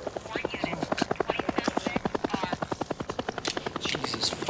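Helicopter rotor beating overhead in a fast, even pulse, with faint voices underneath.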